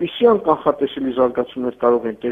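A man speaking over a telephone line: continuous talk that sounds thin and narrow, as phone audio does.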